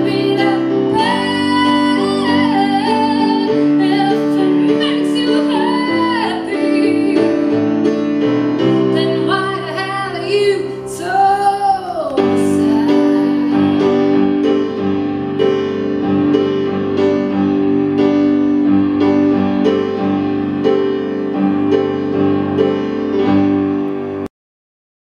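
A female vocalist sings a sustained, gliding melody over keyboard chords in a live performance. Her voice stops about halfway through, leaving the keyboard holding steady chords.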